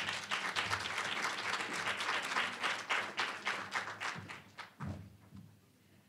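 Audience applauding, fading out about four and a half seconds in.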